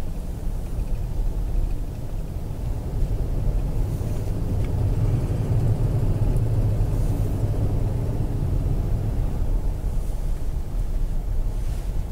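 Car driving, heard from inside the cabin: a steady low rumble of engine and road noise that grows a little louder through the middle.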